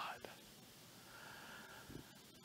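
Near silence: faint room tone in a pause between a man's sentences, his last word fading out at the very start.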